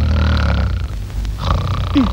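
A man snoring with deep, rough snores: one long snore, then a second starting about a second and a half in.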